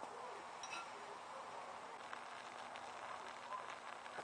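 Faint sizzling and crackling from a grilled cheese sandwich frying in a very hot skillet over a twig-fired rocket stove, with a light metallic clink under a second in as the pan lid is handled.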